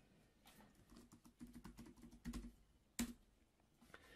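Faint typing on a computer keyboard: a run of soft key clicks, then one sharper click about three seconds in.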